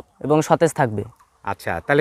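A man speaking in short phrases: only speech.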